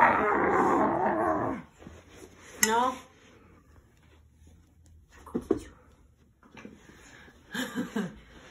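A woman's playful growling into a toddler's tummy for about the first second and a half, followed by a short rising squeal. After that it is quieter, with a soft knock or two and a brief voice near the end.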